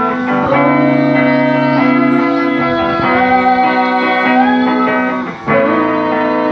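Band playing live, led by electric guitars holding chords that change every second or so, with a brief break about five and a half seconds in.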